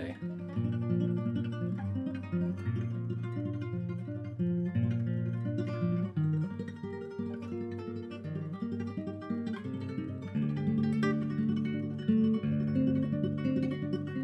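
Nylon-string classical guitar played in tremolo with the flesh of the fingertips rather than nails: thumb bass notes under fast repeated treble notes, running on without a break. The guitar is tuned down a whole step.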